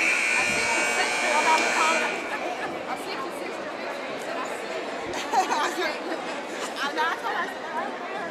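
Gymnasium scoreboard buzzer sounding once for about two seconds as the halftime clock runs out, followed by crowd chatter echoing in the gym.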